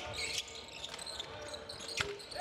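A basketball being dribbled on a hardwood court, with short high squeaks of players' shoes, over the quiet background of a near-empty arena.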